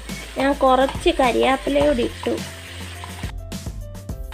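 Beef roast sizzling in a frying pan as it is stirred with a wooden spatula, under soft background music. A woman speaks over it in the first half.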